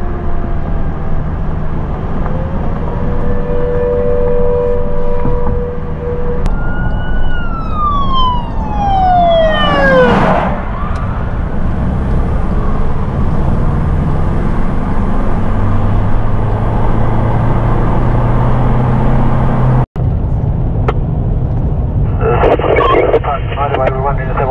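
Emergency vehicle engine running on the move, with a siren: a held tone for a few seconds, then a siren tone falling sharply about seven to ten seconds in. After a brief cut, a voice comes in near the end.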